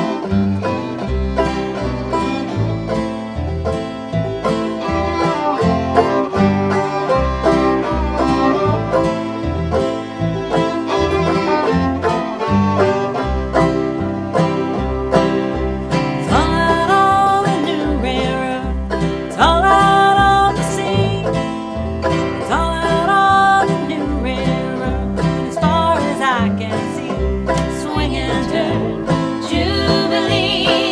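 Acoustic string-band music in a bluegrass style, with plucked upright bass and acoustic guitar. A high sliding melody line comes in about halfway through.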